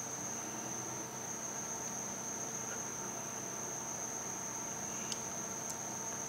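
Steady high-pitched electrical whine with a faint low hum underneath, the constant background noise of the recording, with two faint ticks near the end.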